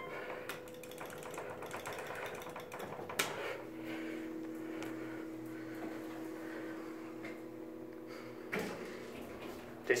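Otis hydraulic elevator running: a fine, rapid mechanical rattle for about three seconds, then a sharp click, then a steady hum for about five seconds that stops with a bump near the end.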